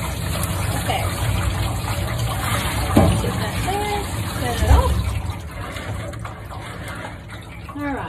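Water spraying from a handheld shower head onto a wet cat's fur in a grooming tub, running steadily and stopping about five seconds in. A few brief pitched vocal sounds come around the middle.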